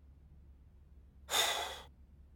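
A man's single audible breath, about half a second long, a breathy rush of air with no voiced sound, about a second and a half in after a near-silent pause.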